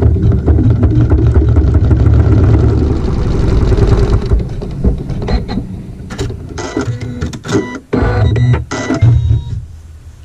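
Computerized embroidery machine stitching a seam through layered quilt fabric. A fast, steady run of needle strokes eases off about halfway through, then gives way to slower, separate strokes and clicks before it stops near the end.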